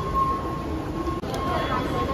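Metro station ambience: the low, steady rumble of an underground train with a held tone near 1 kHz. A short click and dip about a second in.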